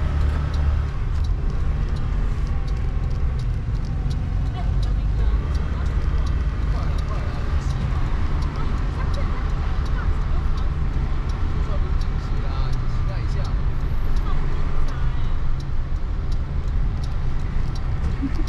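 Car interior noise while driving: a steady low rumble of engine and tyres on the road heard inside the cabin, with scattered faint clicks.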